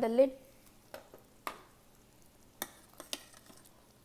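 A metal spoon stirring thick cooked dal in a stainless steel Instant Pot inner pot. It gives a handful of short, sharp clinks of spoon against the pot, spread a second or so apart, with soft stirring in between.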